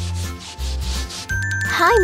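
Broom bristles sweeping across a wooden floor in repeated strokes, over background music with a low bass line.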